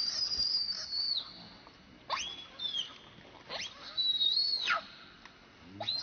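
Baby macaque crying in distress while an adult holds it down: a run of about four thin, high, whistle-like screams that shoot up in pitch, hold, and drop away, with short quiet gaps between them.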